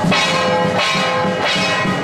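Procession gongs and cymbals struck in a steady beat, about one stroke every two-thirds of a second, each stroke ringing on into the next.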